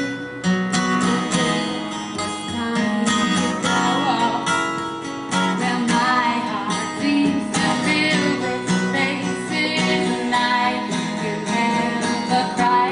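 Acoustic guitar strummed steadily in a rhythmic chord pattern, accompanying a song performed live.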